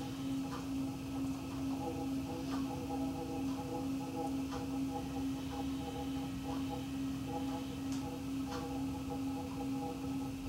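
Electric potter's wheel running at a constant speed, with a steady motor hum and a fainter whine that comes and goes above it, while wet hands pull up a clay wall on the spinning wheel.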